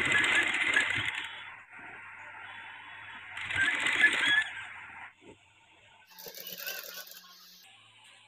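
Sewing machine stitching in two short runs of about a second each, a dense mechanical rattle, followed by a fainter, higher rattle near the end.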